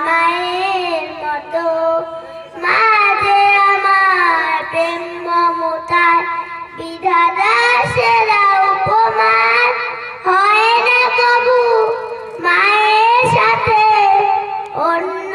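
A young girl singing a Bengali song solo into a microphone, in long phrases of held, wavering notes with short breaths between them.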